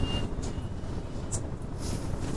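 Classroom background noise in a pause between speech: a steady low rumble with two faint, short, high clicks about a second and a half apart.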